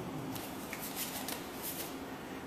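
Hands and forearms slapping and brushing against each other in a close-range short-hand drill, in a quick, irregular run of light slaps and rustles.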